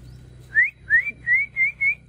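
A person whistling five short rising notes in quick succession to call a dog.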